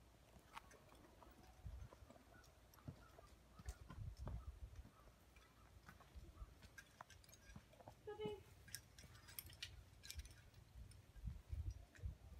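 Near silence outdoors: faint scattered clicks and low thumps, with a brief faint call about eight seconds in.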